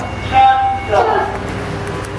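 A single steady electronic beep, about half a second long, over a low steady hum, most likely a lift's signal tone.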